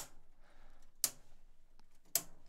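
Sharp clicks of the breaker switches on EG4-LL lithium server-rack battery modules being flipped to ON, one at the start and another about a second later.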